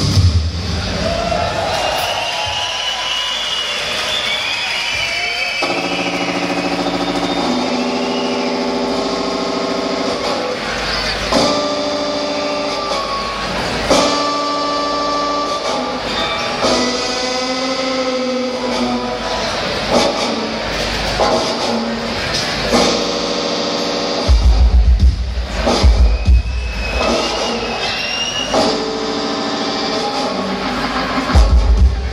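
Live rock band heard through the venue PA from within the crowd: wavering gliding tones at first, then sustained chords, with heavy bass and drum hits coming in near the end.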